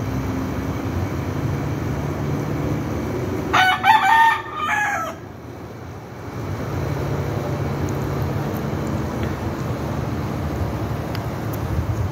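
Rooster crowing once, a loud cock-a-doodle-doo of about a second and a half starting some three and a half seconds in. A steady low hum runs underneath before and after the crow.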